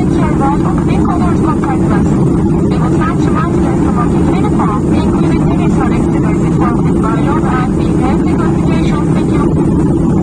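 Steady loud drone of a jet airliner's engines and airflow heard inside the cabin in flight, with indistinct voices of people talking under it.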